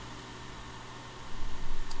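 Steady low background hiss with a faint hum. About a second and a half in, a broader rustling noise rises, and there is one short click just before the end.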